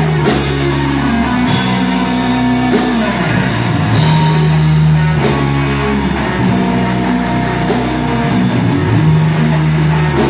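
Live heavy metal band playing: distorted electric guitars and bass hold low, heavy notes that slide down into each change, over a drum kit with steady cymbal hits. Loud throughout.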